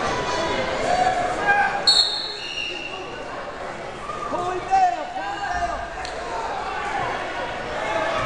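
Voices of coaches and spectators calling out in a school gym during a wrestling bout, with a brief high squeak about two seconds in.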